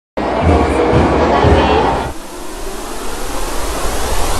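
Audio sting for a channel logo: loud voices starting suddenly, shouting for about two seconds over a heavy low rumble, then a rush of hissing noise that grows steadily louder.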